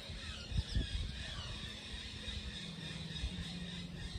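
Outdoor background sound: a steady low hum that drops slightly in pitch a little past halfway, with low rumbling thuds and faint high chirps.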